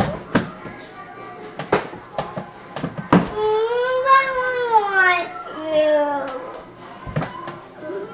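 A high voice drawn out in a long, wavering call, rising then falling over about three seconds, with a shorter falling call after it. Several sharp clicks come before and after it.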